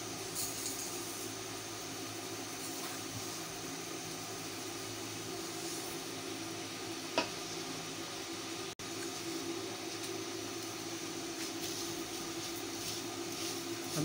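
Steady hiss and hum of seviyan (vermicelli) roasting in ghee in a frying pan over a low gas flame, with a single sharp click about seven seconds in.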